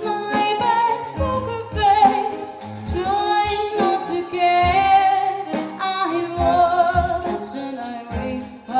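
Live cello, violin and drum kit playing together: a high, wavering melody line with vibrato over sustained lower cello notes, with regular drum hits.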